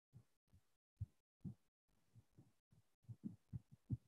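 Near silence on a video-call line, broken by faint, irregular low thumps a few times a second.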